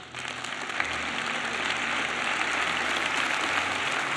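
Audience applauding, starting suddenly and building within about a second to steady clapping.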